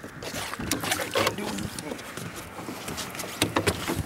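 Outdoor ambience aboard a small fishing boat: a steady wind-and-water hiss with scattered light clicks and knocks, and a brief faint voice about a second in.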